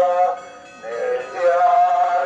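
A hymn sung in long, held notes, two pitches sounding together, with a short break about half a second in before the singing resumes.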